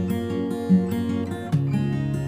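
Acoustic guitar music: strummed chords, changing to a new chord about one and a half seconds in.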